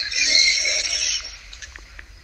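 A short breathy, hissing sound from a person on a phone line, a breath or half-voiced murmur, fading out after about a second.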